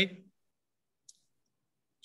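A man's voice ending the word "okay", then dead silence broken by one faint, short click about a second in.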